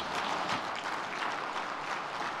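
Audience applauding, a steady clatter of many hands clapping.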